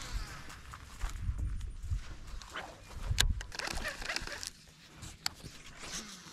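Baitcasting reel being cranked in on a retrieve, with rod-handling noise and wind rumble on the microphone and a few sharp clicks.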